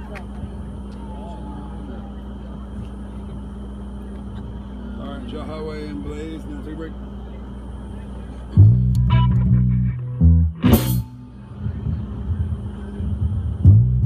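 A steady low hum with faint voices in the room, then a little past halfway an electric bass guitar starts playing loud, low notes through the amplifier, joined by a sharp hit.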